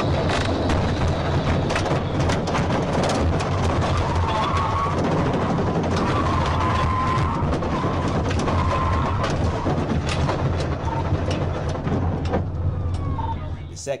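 A state police cruiser's in-car recording at high speed: a loud, steady drone of engine, tyre and wind noise. A wavering tone rises over it in the middle, with scattered clicks.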